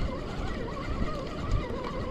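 Spinning reel being cranked to bring in a hooked fish, its gears giving a steady whine that wavers up and down in pitch with each turn of the handle.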